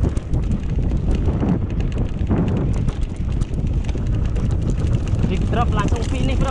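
Mountain bike rolling down a grassy dirt singletrack: wind buffeting the microphone over the low rumble of the tyres, with constant small clicks and rattles from the bike.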